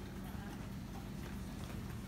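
Quiet shop room tone: a steady low hum with faint light steps on a hard floor.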